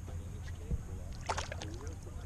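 A short splash about a second in as a released bass goes back into the water, over a steady low rumble.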